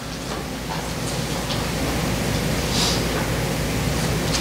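Steady, even hiss that slowly grows louder over the first few seconds, with a faint tick about three seconds in.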